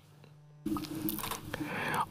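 Near silence, then from about two-thirds of a second in a faint voice and breathing, growing louder toward the end. It is picked up close on a cheap Temu copy of a Neumann U87 condenser microphone.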